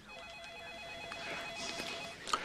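A telephone rings faintly, a single electronic warbling ring of about two seconds.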